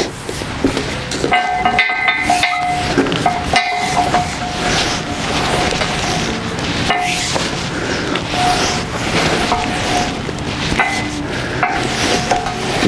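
Stiff new leather latigo strap being sawed back and forth over a beam under hard pulls, leather rubbing with a squeak that comes and goes with the strokes. Working it this way breaks down the leather's fibers to soften it and make it lie flat.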